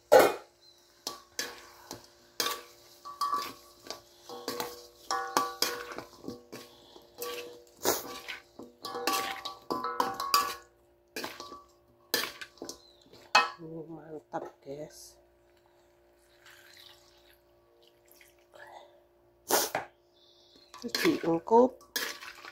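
A spatula clanking and scraping against a wok while stir-frying, in repeated strikes that thin out to a few sparse knocks after about fourteen seconds.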